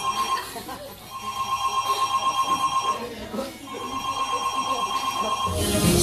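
Telephone ringing tone, a warbling electronic ring in long rings with short gaps between them, played as a break in the dance track. The music's beat kicks back in near the end.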